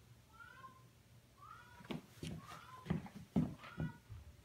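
Rubber-soled suede chukkas stepping and shifting on a hardwood floor, giving light thuds that come more often and louder in the second half. Short, high squeaks recur about once a second.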